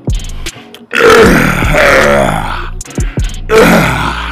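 A man burping loudly, the gas from a boot of sparkling water he has just chugged. There are two long belches, the first about a second in and lasting nearly two seconds, the second starting near the end, over a hip-hop beat.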